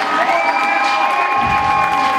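Audience cheering and screaming loudly, with long, steady high notes held through it.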